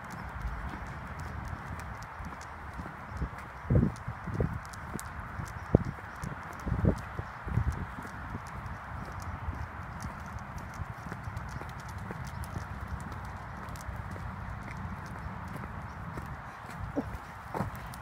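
Footsteps on a tarmac lane, walking steadily, under steady wind rushing over the phone's microphone, with a few louder thumps between about four and seven seconds in.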